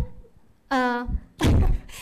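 Dull thumps on a handheld microphone: a short one right at the start, then a louder, heavier bump a little past the middle, with a brief high vocal sound between them.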